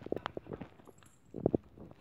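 Soft-coated Wheaten terrier mouthing and chewing at a person's foot: a run of short clicks and snuffles in two clusters, one at the start and another about a second and a half in.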